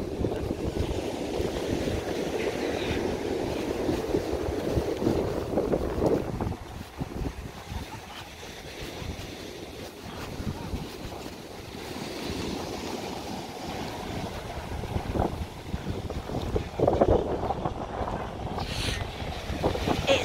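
Strong wind buffeting the microphone over the wash of rough surf breaking on the shore. The gusts ease about six seconds in and pick up again later.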